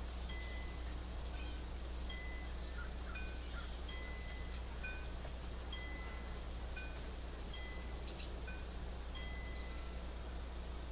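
Birds chirping in clusters of short high calls, with short, evenly repeated whistled tones about once a second and one sharper call near the end, over a steady low hum.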